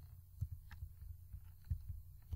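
Three soft computer mouse clicks over a steady low hum from the microphone.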